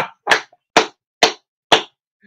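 Hand claps, about five of them, evenly spaced at roughly two a second.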